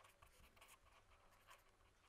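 Very faint scratching of a pen writing on paper in a few short, irregular strokes, against near silence.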